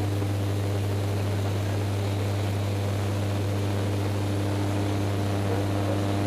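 Propeller aircraft's engines heard from inside the cabin in flight: a steady low drone with a constant hum and the rush of airflow.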